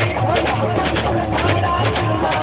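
A rifle fired into the air several times at uneven intervals, as celebratory shots, over loud music and voices.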